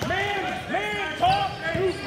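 Basketball sneakers squeaking on a hardwood gym floor as players run and cut: a quick series of short, high squeaks, several a second.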